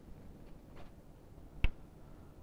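Quiet room tone broken by a single short, sharp click about three-quarters of the way through.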